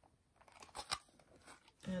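Soft handling noise: a few light clicks and scrapes as a leather-cord pearl bracelet is slid off a bracelet sizer cone, the loudest about a second in.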